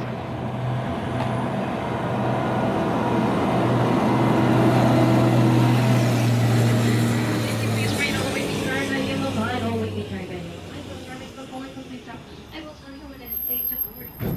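Walt Disney World parking-lot tram's tractor engine running with a steady low hum as the tram pulls up and drives past, loudest about halfway through and fading away after about eight seconds.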